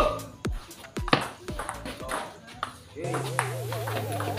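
Table tennis ball clicking off paddles and table in a rally, sharp clicks roughly every half second that stop about three seconds in. Background music with a wavering sung melody runs underneath and comes up louder near the end.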